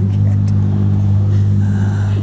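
A loud, steady low hum that holds one pitch without changing.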